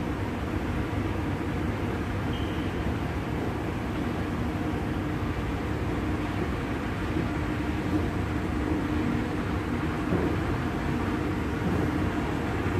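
Moving walkway running with a steady mechanical hum and low rumble.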